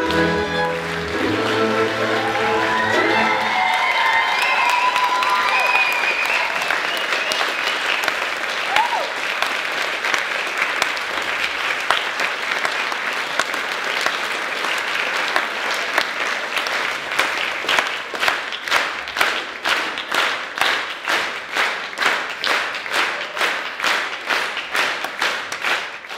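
Folk string band of violins, cimbalom and double bass ends its tune in the first few seconds, and audience applause follows. About two-thirds of the way through, the applause turns into rhythmic clapping in unison, about two claps a second.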